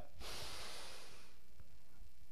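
A man drawing a breath close to a clip-on microphone: a soft hiss that fades out after about a second and a half, over a faint steady low hum.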